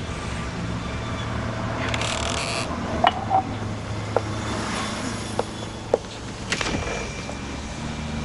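Kitchen handling sounds: a drinking glass clinking several times in short sharp knocks, and a brief sweeping noise near the end as the refrigerator door is opened, over a steady low hum.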